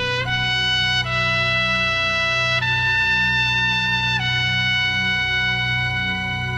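Solo trumpet playing a slow melody of long held notes, changing pitch about every one to two seconds, over a low steady hum.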